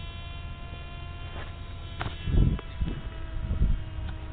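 Handling bumps on a foam RC model plane picked up by its onboard camera: low thumps about two and a half and three and a half seconds in, over a steady high electrical whine.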